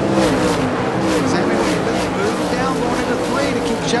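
Winged sprint cars' 410 cubic-inch V8 engines running at full racing speed as several cars pass close by in quick succession, each engine's pitch falling as it goes past.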